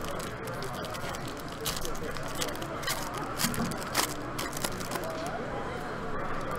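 Foil wrapper of a hockey card pack being handled and torn open, giving many scattered sharp crinkles and crackles. Background voices of a crowded hall run underneath.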